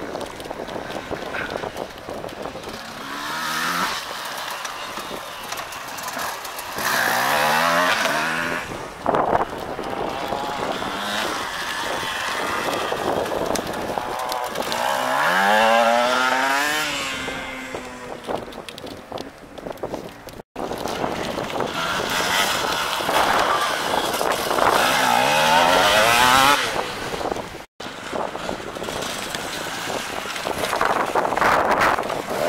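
Enduro dirt bikes riding past one after another, their engines revving up and down as they work through the course, with the loudest pass in the middle. The sound breaks off for an instant twice in the second half.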